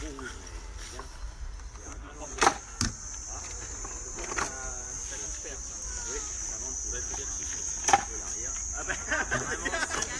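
Wooden polybolos shooting bolts: sharp knocks about two and a half seconds in and again near eight seconds. A steady high insect buzz runs underneath.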